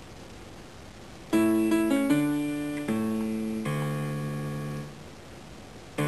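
Piano accompaniment playing a short run of about four struck chords, the first starting a little over a second in, each ringing and decaying before the next. The last fades out about a second before the end.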